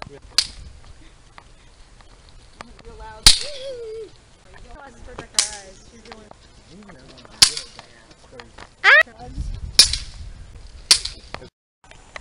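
Six sharp cracks of small bang snaps (snap-pops) hitting concrete, one every couple of seconds.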